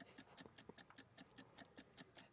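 Near silence with faint rapid ticking, about six short ticks a second.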